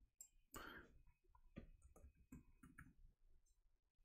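Faint, scattered clicks of a computer keyboard and mouse as a short word is typed.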